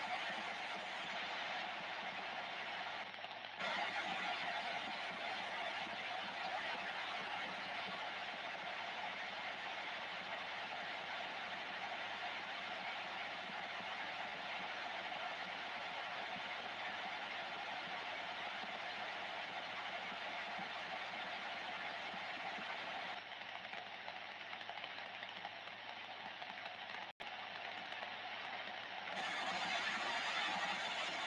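Ranger 2995 DX CB base station receiving on channel 17 (27.165 MHz AM), its speaker giving a steady hiss of open-channel noise. The noise steps up in level a few seconds in, with a momentary dropout near the end.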